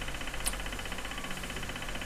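Steady low background hum of a small room, with one faint click about half a second in.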